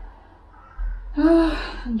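A woman's voice: after a short quiet pause, one drawn-out wordless vocal sound about a second in, rising then falling in pitch and lasting about half a second.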